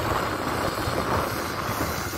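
Steady engine and pump noise from a pressure-washing rig running while its hand-held lance sprays water over new asphalt to clean it.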